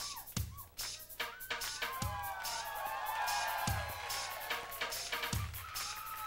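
Concert opening music: a deep, falling boom about every 1.7 seconds under quick high ticks, with gliding high tones that swell in the middle.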